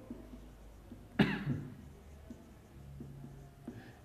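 A man coughs once, abruptly, about a second in, over faint scratching and ticking of a marker on a whiteboard.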